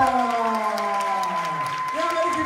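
Audience cheering and clapping: several voices hold long 'wooo' whoops that slide slowly down in pitch, over steady hand-clapping.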